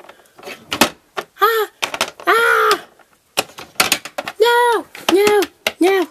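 A high voice making several short wordless vocal sounds, each rising and falling in pitch, with light clicks of plastic toy figures being moved on a tabletop between them.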